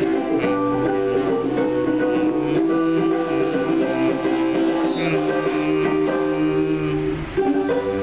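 A small ukulele is strummed solo in the instrumental ending of a song. The chords are held steadily, and a new chord is struck near the end.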